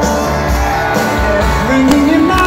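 Live rock band playing, recorded from the audience: electric guitar and drums with a steady kick-drum beat about twice a second.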